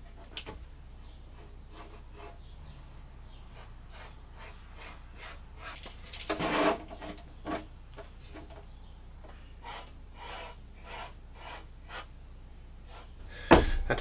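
Scattered short scratching and rubbing strokes from a marker being drawn across a plastic fan trim ring while it is measured with a tape measure and handled on a table. There is one louder rasp about six and a half seconds in.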